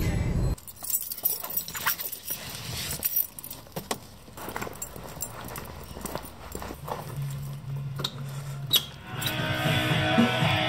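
Music cuts off about half a second in, leaving scattered clicks, knocks and footsteps of someone walking up to and through a door. Near the end music comes up again.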